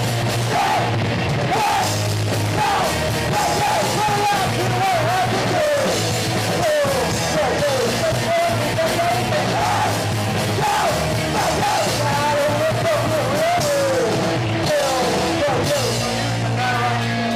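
Punk rock band playing live: amplified electric guitars and drums, with a lead vocal carried over the top.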